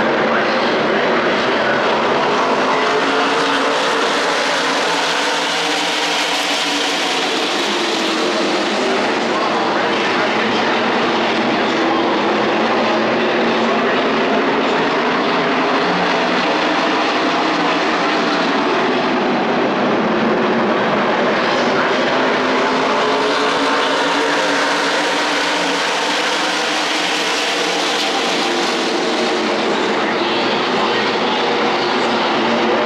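A field of NASCAR race cars running together at speed, many V8 engines with their notes bending up and down. The sound swells twice as the pack passes, once about a fifth of the way in and again near the end.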